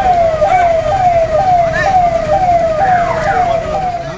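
Police vehicle siren sounding a repeating tone that slides down in pitch and snaps back up, about two cycles a second.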